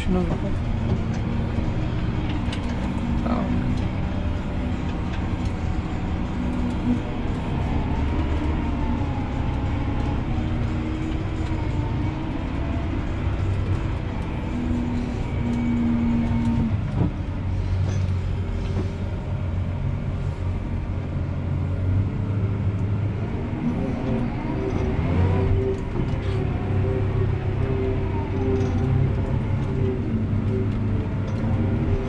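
John Deere 7R 290 tractor's six-cylinder diesel engine running steadily while driving, heard from inside the cab, its pitch stepping up and down slightly as the revs change.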